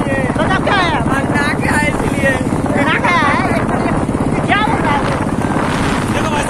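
Motorcycle engines running as the bikes ride along, a steady rapid low pulsing rumble, with riders' voices calling out over it.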